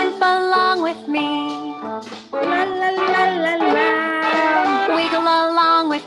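A children's sing-along song: a voice singing a "la la la" melody in held, gliding notes over instrumental backing.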